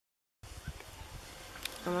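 Silence, then a cut to faint, steady outdoor background noise with a light buzz and a single sharp click. A woman begins to speak near the end.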